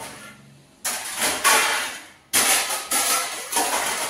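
An under-counter kitchen drawer sliding, with steel utensils rattling and clattering in it. The sound comes in two noisy stretches, about a second in and again just after the middle.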